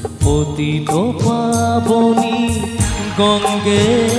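Instrumental interlude of a live Bengali devotional song: a lead melody with a rising pitch slide and wavering held notes, over steady percussion strokes.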